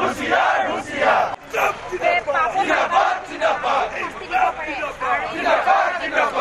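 Crowd of protesters shouting slogans together, many voices overlapping in repeated loud shouts.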